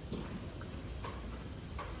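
Footsteps on a hard, wet concrete floor: three sharp steps a little under a second apart, over a steady low background hum.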